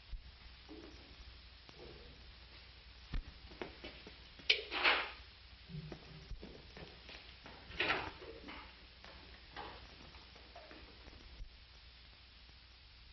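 Scattered light knocks and rustling scrapes of things being handled, with two louder scraping rustles about four and a half and eight seconds in, over the old soundtrack's steady hiss and low hum.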